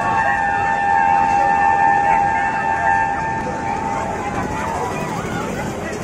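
A steady, high electronic tone, buzzer- or siren-like, holds and then cuts off about four and a half seconds in, over a background of voices and crowd chatter.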